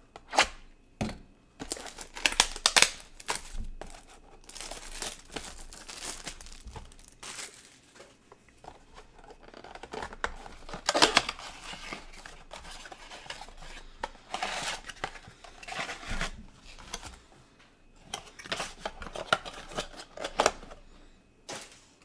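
A cardboard trading-card blaster box being torn open by hand and its foil card packs handled and opened, in irregular bursts of tearing and crinkling.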